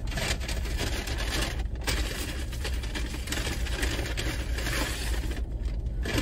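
Paper fast-food bag and food wrapper rustling and crinkling continuously as the bag is rummaged through, with a low steady hum underneath.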